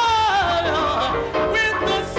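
Live gospel singing with piano: a solo voice holds a long high note that slides downward, then moves into shorter ornamented runs.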